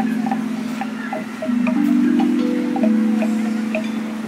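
Large outdoor metallophone (a playground xylophone with metal bars) struck with mallets: low notes that ring on and overlap, with a fresh group of notes about a second and a half in and another near the end.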